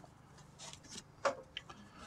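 Faint rustling and light ticks of nylon paracord being pulled through and wrapped around the drum's back lacing, with one sharper brief sound about a second and a quarter in.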